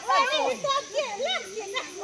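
Several women's voices calling out over one another, high and lively, as a group plays a ball-tossing game.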